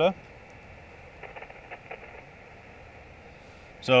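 Faint handling ticks as a handheld radio is moved about, a few quick ones between about one and two seconds in, over a steady low hiss.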